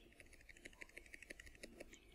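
Faint clicks of computer keyboard keys pressed in quick succession, as a line of code is deleted.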